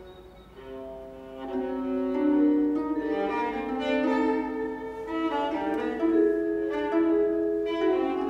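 Solo viola and chamber orchestra playing a contemporary concerto, mostly bowed strings: a soft held note, then about a second and a half in more string lines enter in overlapping sustained notes and the music swells.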